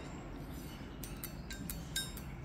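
Faint light metallic clicks and scrapes of steel spring calipers against the port walls of a VW 8-valve cylinder head, starting about a second in, with one sharper click near the end.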